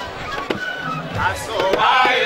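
A set of small skin-headed hand drums struck with bare palms, giving sharp separate strokes. Voices singing or chanting come in about halfway through.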